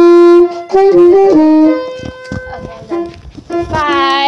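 Tenor saxophone playing a few loud held notes that change in steps, then stopping a little under two seconds in. Near the end a voice gives a rising cry.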